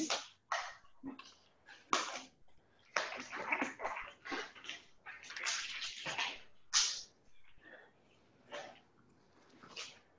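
Irregular rustling and rubbing of an exercise band being pulled and wrapped snug around the leg, in a string of short bursts of different lengths that thin out over the last few seconds.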